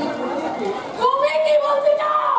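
Speech: a performer speaking stage dialogue in Bengali.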